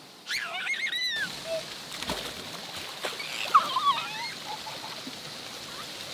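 Children squealing and shouting over splashing, running water at a water slide and splash pool. The high, gliding squeals come in two bursts, about half a second in and again around three and a half seconds.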